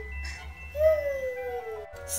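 A child's voice making a long, slowly falling hum, a pretend sleepy snore for a sleeping doll, over soft background music. The hum comes about halfway through, just after the tail of another one.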